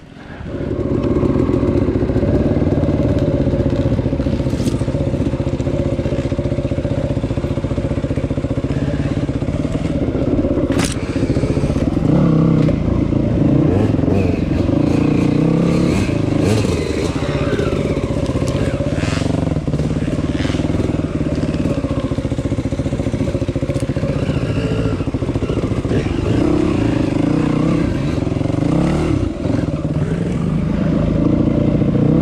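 Yamaha WR250 dirt bike engine running while being ridden, its pitch shifting a little with the throttle, with a few sharp clicks and knocks from the trail.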